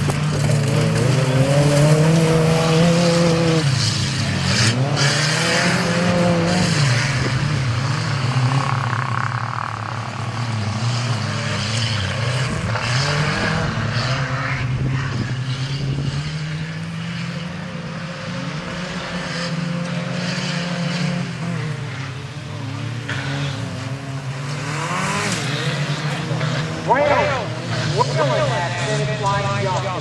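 Several compact pickup truck race engines running and revving hard around a track, their engine note rising and falling over and over as they accelerate and lift off. One rev climbs sharply near the end.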